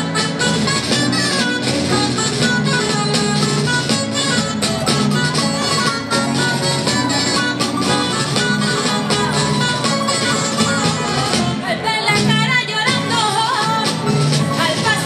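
Live Spanish folk jota played by a rondalla of guitars and other plucked strings, an instrumental passage between sung verses, with a steady beat of sharp clicks under the melody.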